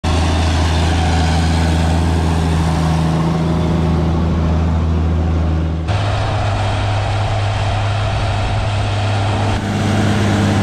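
Versatile 936 four-wheel-drive tractor's Cummins 855 six-cylinder diesel running steadily under load, pulling a seven-bottom moldboard plow through the ground. The engine tone changes abruptly about six seconds in and again near the end.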